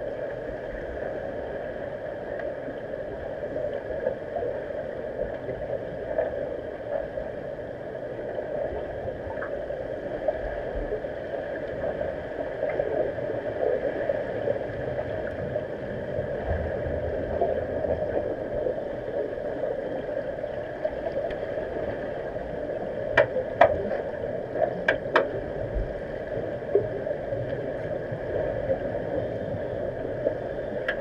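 Muffled underwater pool sound recorded by a camera on the pool floor: a steady hiss of moving water, with several sharp clicks in quick succession about three-quarters of the way through.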